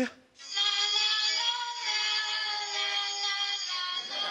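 An eerie synthesized, voice-like chord held steady, a horror-style music sting that answers the doll being questioned. It comes in about half a second in and cuts off just before the end.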